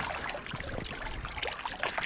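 Boots stepping through wet mud and shallow water at the river's edge, a run of soft irregular squelches and crackles over a faint trickle of water.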